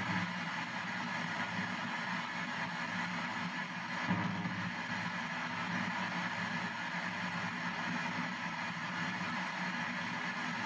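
P-SB7 ghost box sweeping down the FM band in reverse sweep at 200 ms per step, its speaker giving a steady hiss of radio static.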